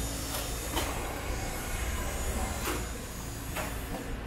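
Steady low rumble of stall and market background noise, with four short clatters like utensils or bowls knocked against metal, the first two close together early and the other two later.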